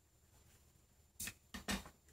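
Faint room tone, then two short rustling handling noises a little over a second in, about half a second apart, as tools and hands are lifted off the newspaper-covered bench.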